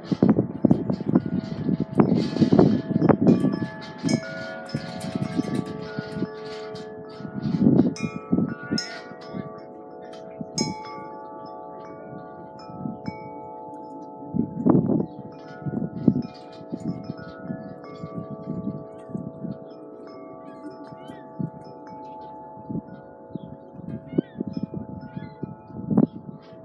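Wind chimes ringing in a breeze: irregular strikes whose tones overlap and hang on. Loud low gusts of wind rumble on the microphone now and then, strongest in the first few seconds, near 8 seconds and near 15 seconds.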